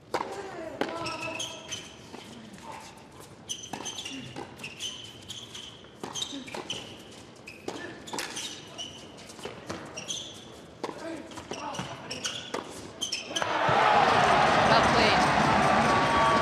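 A doubles tennis rally on an indoor hard court: rackets striking the ball in a steady exchange, with shoes squeaking on the court between strokes. About thirteen and a half seconds in, the point ends and the crowd breaks into loud cheering and applause.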